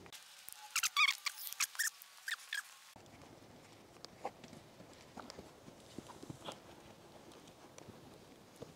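A horse walking on arena sand: faint scattered ticks and soft steps. In the first three seconds there are a few short, sharp, high squeaks.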